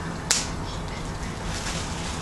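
A single sharp, crisp snap of a stiff paper greeting card being flipped open, about a third of a second in, then only a steady low background hiss.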